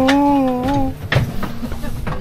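A man's long drawn-out exclamation, "ohhh", held at a steady pitch and ending just under a second in. It is followed by a few short clicks and knocks.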